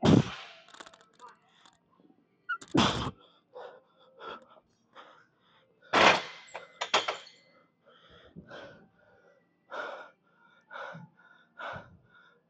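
A weightlifter's forceful, noisy breaths and gasps under a heavy barbell back squat: a sharp breath every second or two, the loudest right at the start and about 3 and 6 seconds in, with the straining of a near-maximal set.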